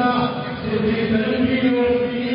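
A ring announcer's voice over a public-address system, drawn out in long held syllables and echoing in a large hall.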